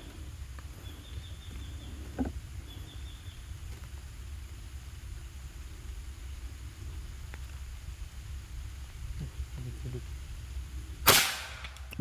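Naga Runting PCP air rifle firing a single shot of a 15-grain NSA slug about eleven seconds in, one short sharp report over a low steady background.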